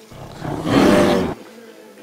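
Black suede K-Swiss sneaker rubbed right against the microphone: a loud, rough rubbing rumble lasting about a second.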